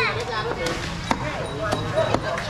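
People talking in a busy market, with about five sharp knocks roughly half a second apart.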